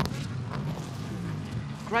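Race car engines running on the circuit: a steady drone with a slightly wavering pitch.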